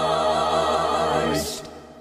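Closing theme music: a choir holds a final chord, which fades out near the end.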